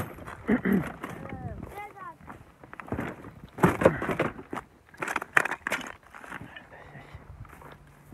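Indistinct voices of people nearby, with a few sharp knocks in the middle, and a low steady hum coming in near the end.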